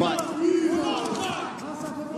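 Several men shouting at once from cageside, cornermen calling instructions to the fighters, with one long held shout about half a second in.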